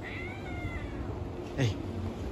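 A kitten gives a high-pitched meow that rises then falls and lasts under a second, while two kittens play-fight. About a second and a half in comes a short, louder cry that drops in pitch.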